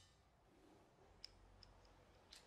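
Near silence: room tone with three or four faint, short ticks a little past the middle.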